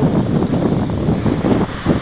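Wind buffeting a handheld camera's microphone: a loud, uneven rumble that surges and falls.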